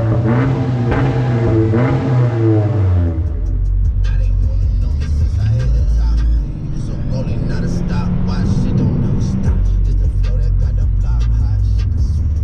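Honda Civic engine and exhaust revving, its pitch rising and falling in the first few seconds, mixed with electronic music. After that a steady low rumble carries on under the music.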